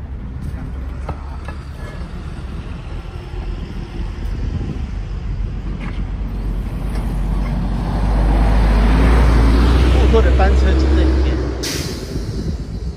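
Street traffic, with a heavy road vehicle passing close: its low engine rumble swells from about eight seconds in, stays at its loudest for a few seconds, then falls away shortly before the end.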